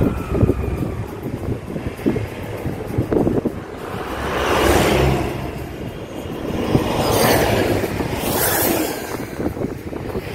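A car driving along a road, heard from inside: steady road and wind noise. Two louder rushes swell and fade, about four seconds in and again about seven seconds in, as traffic passes.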